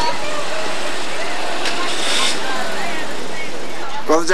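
Indistinct voices of several people talking at a distance, under a steady loud noise, with a short hissing burst a little under two seconds in.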